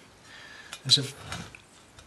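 Speech only: a man's single short hesitant syllable about a second in, otherwise quiet room tone.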